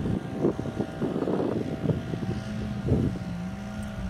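Wind rumbling on the microphone, with a low steady tone coming in about halfway through.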